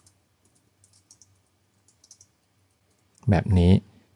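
Faint computer keyboard keystroke clicks typing a short line of code, in quick runs over the first two seconds or so.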